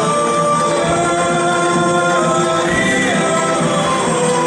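A choir sings a folk song in several parts, the voices holding long notes and moving in harmony.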